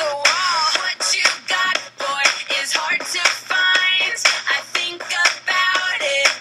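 A pop song playing: a fast, steady beat under an electronic, synthetic-sounding lead line, with no clear words.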